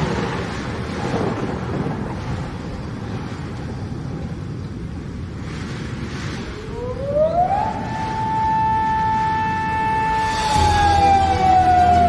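Produced outro sound effects: a noisy hiss for the first half, then a tone that glides up about seven seconds in, holds steady, and starts slowly falling as low music comes in near the end.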